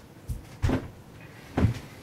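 Three short, dull thumps, the second and third louder than the first.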